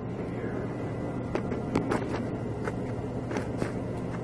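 Steady low hum with a few light clicks and taps scattered through it.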